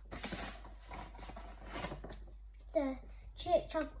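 Soft rustling and handling of sheet-music pages on a piano's music stand, then a child speaks a few short words near the end.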